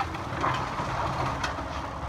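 Cat 308E2 excavator's diesel engine running under hydraulic load as its bucket pushes into a pile of demolition debris. A spell of crunching breaks out about half a second in, and a sharp crack of breaking wood or sheet metal comes at about one and a half seconds.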